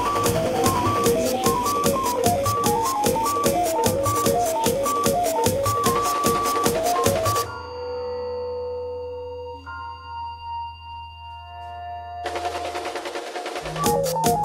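Contemporary ensemble music: a fast steady pulse of clicks under short repeated notes cuts off abruptly about halfway. A few held tones over a low drone follow, then a dense noisy layer enters near the end and the pulsing notes return.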